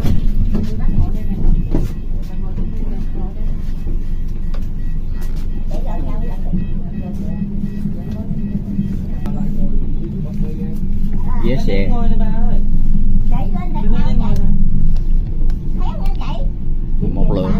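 Inside a moving city bus: the engine and road noise make a steady low drone, with voices heard faintly over it a few times.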